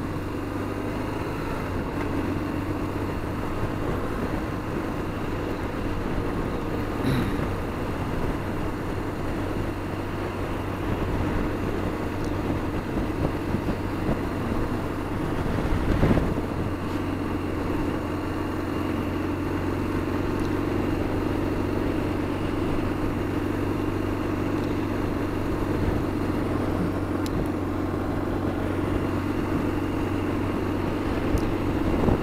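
BMW R1200GS Adventure's boxer-twin engine running steadily at cruising speed, with wind and road noise. There is a brief thump about halfway through.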